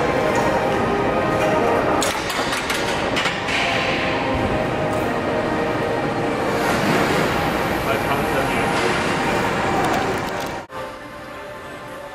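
Busy gym room sound: indistinct voices and music, with sharp clicks and clinks of weights. It cuts off abruptly about ten and a half seconds in.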